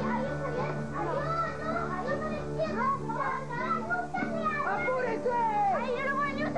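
Several children's voices calling out and talking over one another, with steady background music underneath.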